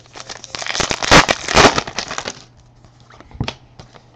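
A trading-card pack wrapper being torn open and crinkled by hand: about two seconds of crackling and rustling, then a single light click.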